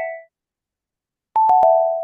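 Online quiz game's wrong-answer sound: a short electronic chime of three quick notes stepping down in pitch. The end of one chime fades out at the start, and a full one sounds about a second and a half in.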